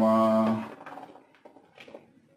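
A man's voice drawing out a word for about half a second, then quiet with a few faint light clicks.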